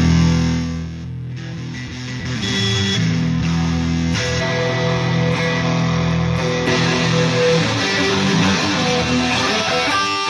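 Electric guitar played through a HeadRush Pedalboard amp-modelling processor. A loud chord rings out at the start and dies away, then strummed playing continues. The tone changes partway through as other rigs are selected.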